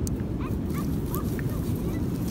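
Wind buffeting the microphone outdoors, a steady low rumble, with a few faint short high calls in the background around the middle.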